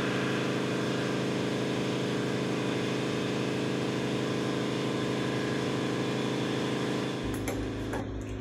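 A basement compressor running: a steady mechanical hum made of many even, level tones. About seven seconds in it gives way to a lower, duller hum.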